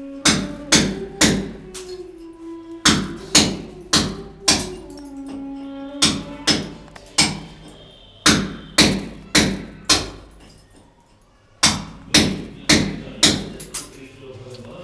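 Hammer blows on masonry, about two a second in runs with short pauses.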